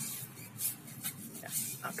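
A bristle brush swishing across a car tyre's rubber sidewall in about three short strokes, spreading tyre shine dressing.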